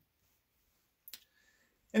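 Near silence with one brief faint click about a second in, followed by a faint short high tone.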